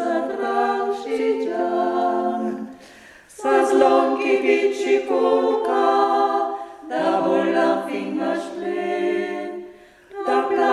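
Four women singing a traditional Ladin folk song from Val Gardena unaccompanied, in close harmony, on long held notes in phrases, with a short breath break about three seconds in and another at the end.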